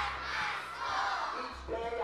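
A gym full of schoolchildren reciting a pledge aloud together in unison, a crowd of voices speaking in phrases.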